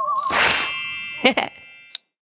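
Cartoon sound effects: a wavering spooky tone fades out under a swishing burst, then a short sliding cartoon sound about a second in, and a bright ding right at the end as the ghost disguise comes off.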